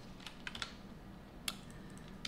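A few scattered keystrokes on a computer keyboard, the clearest about a second and a half in.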